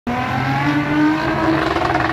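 A road vehicle's engine accelerating on the street, its pitch climbing slowly and steadily.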